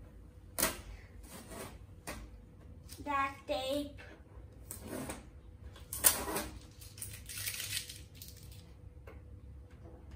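Orange packing tape being peeled off a laser printer's plastic casing: a series of short ripping and rustling strips, with a louder rip about six seconds in and a longer one at seven to eight seconds. Two brief vocal sounds from a child come around three seconds in.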